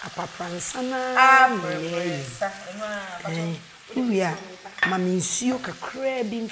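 Chopped tomatoes and palm oil sizzling as they fry on a gas hob, with stirring, under women's voices talking, the loudest of them about a second in.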